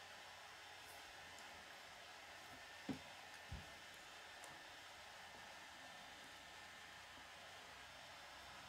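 Near silence with faint steady hiss, broken about three seconds in by two soft clicks about half a second apart as small Lego pieces are pressed together.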